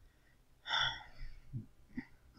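A man breathes in sharply once, a little over half a second in, then makes a short, low sound in his throat.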